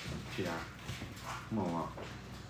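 Two faint, brief voice-like sounds about a second apart, over a low steady background hum.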